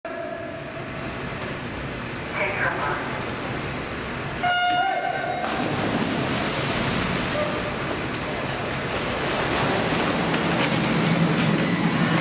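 Electronic swim-start beep: one steady tone about a second long, about four and a half seconds in, followed by crowd noise that builds steadily.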